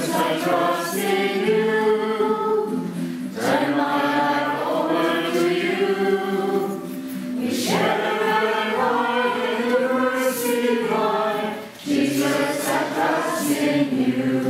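A group of people singing a hymn together in long sustained phrases, with short breaks about every four seconds.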